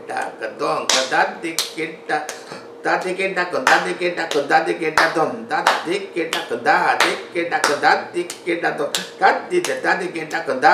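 Konnakol: a man rapidly reciting Carnatic drum syllables in a korvai, with sharp hand claps and finger taps keeping the tala.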